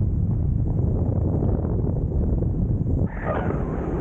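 Wind buffeting the camera microphone during a tandem parachute descent under an open canopy: a steady low rumble that dips briefly about three seconds in.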